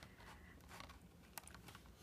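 Near silence: room tone, with a couple of faint ticks about one and a half seconds in.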